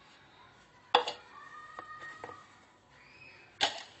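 Two sharp knocks about two and a half seconds apart: kitchen utensils, a metal mesh flour sieve and a wire whisk, striking a mixing bowl while flour is sifted and stirred in.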